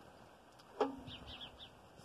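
Faint, repeated bird chirps, with a single sharp click just before the middle followed by a brief low hum.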